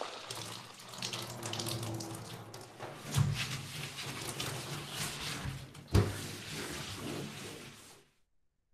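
Recorded sound effect of washing a car: water running and splashing, with two sharp knocks about three and six seconds in, cutting off suddenly at the end.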